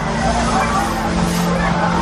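Fairground jumper ride in operation: a steady low drone from its drive under loud pop music and crowd voices.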